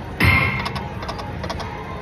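Konami video slot machine spinning its reels: a loud electronic sound falling in pitch just after the start, then a quick run of clicks as the reels stop one after another.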